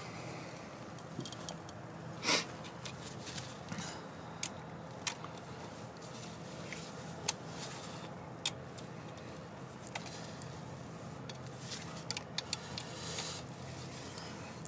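Scattered light metal clicks and clinks from a socket wrench and extension turning the fuel rail bolts a half turn at a time, over a faint steady low hum.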